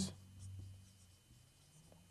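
Faint scratching of a marker writing on a whiteboard, strongest in the first second.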